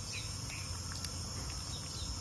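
Steady high-pitched insect chirring, with one faint click about halfway through.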